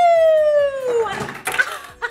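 A woman's long, falling "woo" of excitement, sliding down in pitch for about a second, then laughter.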